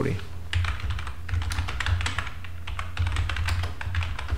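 Typing on a computer keyboard: a quick run of key clicks as a search phrase is typed, over a steady low hum.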